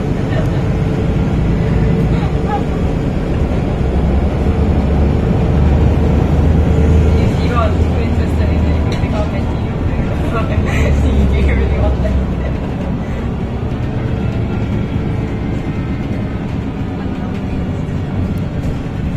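MAN D2066 inline-six diesel and ZF EcoLife automatic driving a MAN Lion's City bus, heard from inside the passenger cabin: a steady low engine drone with road noise. The drone grows heavier for several seconds in the middle, as if pulling under load, then eases off.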